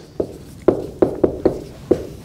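Dry-erase marker writing on a whiteboard: about six short, sharp taps as the marker strikes the board for each stroke.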